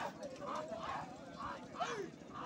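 Men's voices shouting and calling, heard faintly, in short broken bursts as handlers drive a pair of oxen dragging a stone block.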